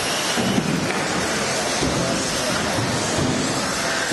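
Electric 1/10-scale 2WD RC off-road buggies running on an indoor carpet track, a steady noisy mix of motors and tyres with a murmur of the crowd's voices.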